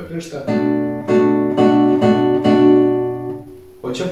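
Nylon-string classical guitar playing a Bm7 chord, struck about five times at an even pace, the chord ringing between strokes and fading away near the end.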